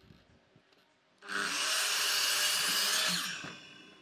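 Makita sliding miter saw starting abruptly about a second in and cutting through a stack of wooden boards for about two seconds, then switched off, its blade spinning down with a fading whine.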